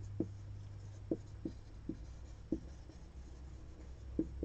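Marker pen writing on a whiteboard: several short, soft strokes, unevenly spaced and fading out after about three seconds, over a steady low hum.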